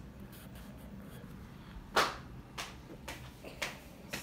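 A glass baking dish of cake batter knocks sharply on a table about two seconds in as it is handled and set down, followed by three lighter clicks.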